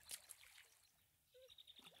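Near silence: faint trickling water, with a couple of faint ticks near the start.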